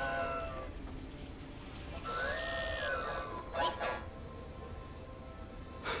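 Film soundtrack: a low steady rumble, with one drawn-out call about two seconds in that rises and then falls in pitch, and a brief sharp cry a little over a second later.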